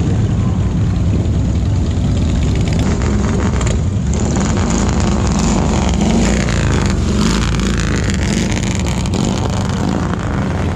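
Engines of a line of cruiser and touring motorcycles rumbling as they ride slowly past in procession, with one passing close in the middle.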